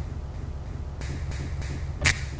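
Steady low rumble of outdoor background noise with a faint hiss, no music or voice.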